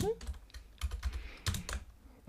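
Typing on a computer keyboard: a few separate keystroke clicks, most of them in the second half.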